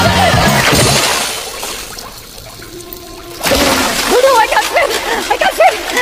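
Film score music fading out over the first two seconds. About three and a half seconds in comes a sudden splash into water, followed by a character's spluttering, wavering cries as he flounders.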